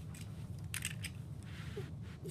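Handling noise: a brief cluster of scrapes and clicks about three-quarters of a second in, over a steady low hum.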